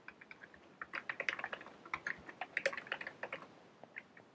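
Typing on a computer keyboard: a few scattered keystrokes, then a quick dense run from about a second in until shortly before the end.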